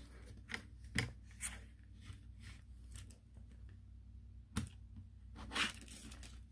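Hinged plastic paint trays of a fan-style watercolor travel set being swung open: a few faint plastic clicks in the first second and a half, then a sharper click and a brief scrape near the end.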